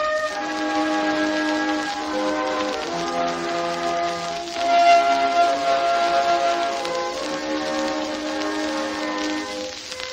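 Orchestral passage from a 78 rpm gramophone record: the orchestra holds sustained chords that change every second or so, with no voice. Steady surface hiss and crackle from the disc run underneath.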